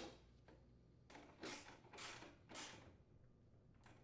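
Faint handling noise of a mower's metal debris shield being fitted and screwed in place: three short scrapes between one and three seconds in, with near silence around them.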